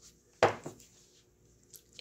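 One sharp knock of an object set down on a wooden tabletop about half a second in, followed by a couple of faint clicks and quiet handling of paper.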